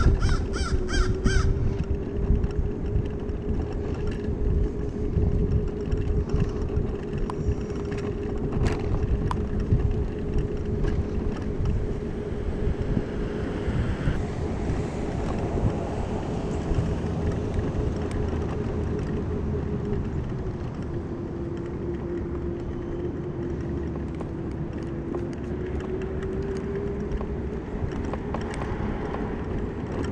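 Small electric ride-on vehicle running along a road: a steady motor whine over road rumble and wind, the whine dipping in pitch about two-thirds of the way through and rising again. Right at the start a crow caws about four times in quick succession.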